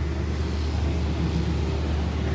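Steady low background rumble with a faint even hiss and no distinct events.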